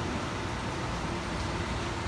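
Steady room background noise, a low rumble with hiss, with no speech.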